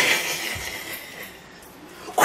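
An elderly woman's hissing growl imitating Dracula, loud at first and fading away over about a second.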